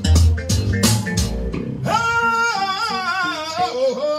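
Live gospel band playing, with bass guitar and drums hitting hard, until the band drops out about two seconds in. A singer then holds long high notes with a wavering vibrato.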